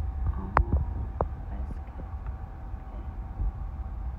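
Low, steady rumble inside a car's cabin with the engine running, and a couple of brief sharp sounds about half a second and a second in.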